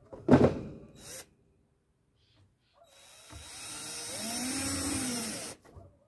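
A Titan cordless drill driving a screw into the hive's wooden frame: the motor whines up, holds for about two seconds, then winds down. Before it, about a third of a second in, there is a loud knock and clatter of wood being handled.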